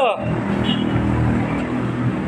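Steady road traffic noise of cars and engines running.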